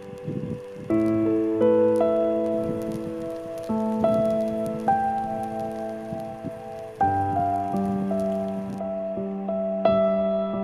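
Background music: slow, sustained piano or electric-piano chords changing every second or two. A rough noise sits beneath it, strongest in the first second.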